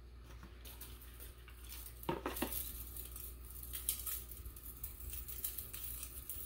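Light, scattered clinks and rattles of a tangled metal chain necklace being handled and picked at.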